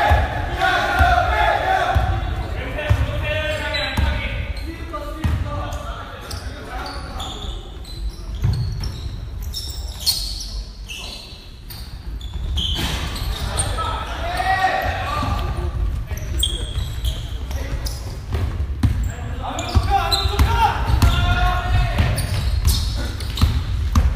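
A basketball bouncing on a gym floor during play, with players' voices calling out, echoing in a large hall.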